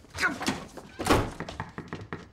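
A door slammed shut: one heavy thunk about a second in.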